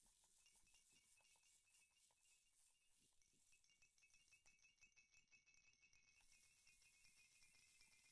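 Near silence, with only a very faint hiss.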